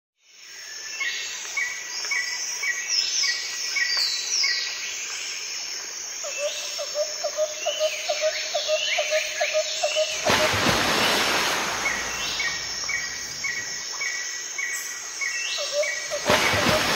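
Nature ambience from a background soundtrack: many birds chirping and whistling in short repeated phrases, over a steady pulsing trill. A loud rushing noise comes in about ten seconds in.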